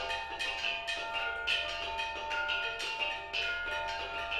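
Gamelan ensemble playing: bronze metallophones and kettle gongs struck with mallets, a fast, even stream of strokes, several a second, over many overlapping ringing tones.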